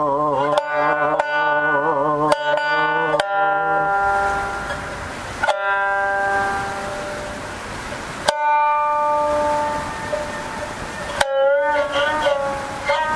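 Jiuta shamisen played solo: sharp plectrum-struck notes, several in quick succession over the first few seconds, then single notes left to ring and fade, with a quick bent figure near the end.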